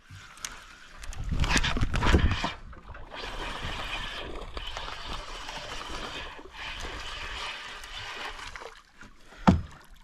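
A baitcasting fishing reel being cranked to retrieve line, a steady whir for several seconds. A loud burst of noise comes before it, and a single sharp click near the end.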